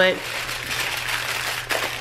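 Aluminium foil crinkling and rustling as hands fold and wrap it.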